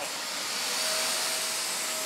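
Shark Mess Master wet/dry portable vacuum running, its hose tool drawn across wet carpet to suck the water out of the fibres. It makes a steady rushing hiss, with a faint steady whine joining about half a second in.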